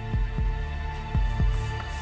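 Game-show tension music: a steady low drone with a heartbeat-like double thump about once a second, the suspense bed that holds while the contestant decides on the banker's offer.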